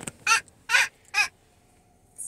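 Three short, high-pitched calls, each about a fifth of a second long and spaced about half a second apart, with quiet between them.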